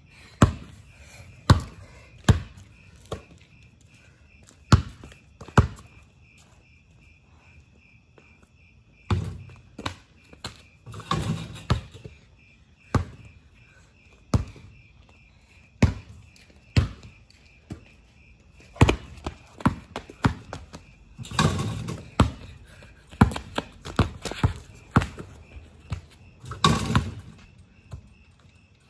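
Basketball dribbled on a concrete driveway: sharp single bounces, often about a second apart, broken by four longer, noisier crashes of ball and hoop on dunk attempts. Crickets chirp steadily underneath.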